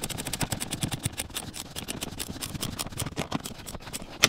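Hand ratchet with a 12 mm socket clicking rapidly as it is worked back and forth, tightening the nut that holds an accelerator pedal onto its mount.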